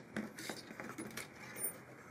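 Faint, scattered small clicks and rubbing as fingertips press a thin black-white-black purfling strip down into a narrow routed channel in a plywood test piece.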